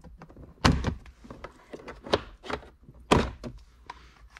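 Plastic trim clips of a 2013 Toyota Sienna's center-console cup holder panel being pried up with a plastic trim tool: a few sharp clacks and knocks, the loudest about two-thirds of a second in and about three seconds in.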